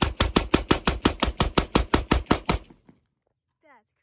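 A rifle fired in a rapid string of shots, about six a second, that stops about two and a half seconds in.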